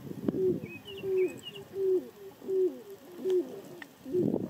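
Grey crowned cranes giving a steady series of low booming calls, about three every two seconds, each a short held note that drops at its end. Faint high chirps from a small bird about a second in.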